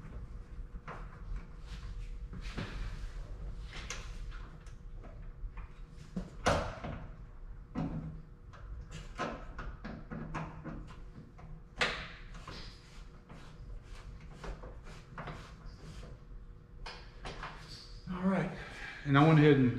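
Scattered metal clicks and knocks of hands and tools working on a coilover strut as its spring perch is adjusted up to take the slack out, with louder knocks about six and a half and twelve seconds in. A low steady hum runs underneath.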